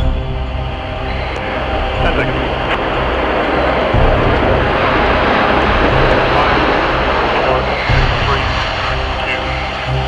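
CF-18 Hornet fighter jet's twin engines at full power on takeoff, a loud rushing jet noise that swells to its loudest in the middle, over a backing music track with a deep pulse about every two seconds.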